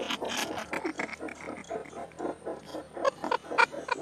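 Several people laughing in quick, broken bursts.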